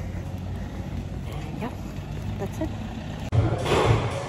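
Street traffic: a steady low rumble of passing vehicles, with faint voices now and then. About three seconds in it cuts off suddenly to louder background music with a low pulsing beat.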